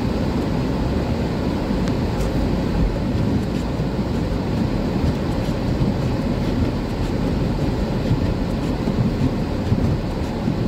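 A car driving, heard from inside the cabin: a steady low rumble of engine and tyre noise on a snow-covered road.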